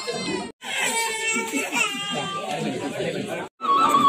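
Several people's voices talking in a gathering, broken twice by sudden dropouts where the recording cuts; after the second cut a louder voice comes in.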